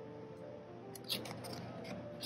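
Soft piano music plays throughout, a piano cover of a song. About a second in, a photobook page being turned gives a short, crisp paper rustle.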